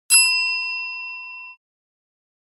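A single ding of a notification-bell sound effect: one struck chime that rings and fades out over about a second and a half.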